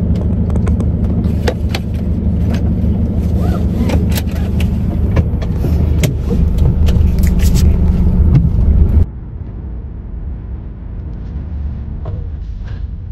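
Low rumble of a moving vehicle heard inside its cabin, with scattered small clicks and rattles. About nine seconds in it drops abruptly to a quieter, steadier hum.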